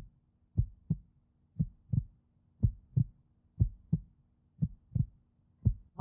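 Suspense heartbeat sound effect: a double thump, lub-dub, repeating steadily about once a second over a faint low steady hum.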